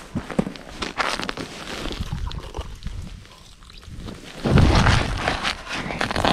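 Footsteps crunching in snow, then from about four and a half seconds in a louder rumbling rustle of clothing and handling noise on the body-worn camera as the walker kneels at an ice-fishing hole.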